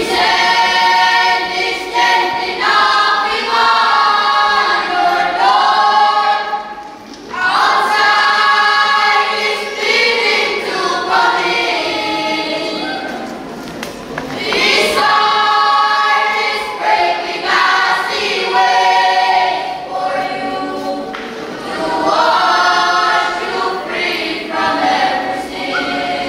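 A choir of young boys and girls singing a song together in long sung phrases, with short breaks about 7 and 14 seconds in.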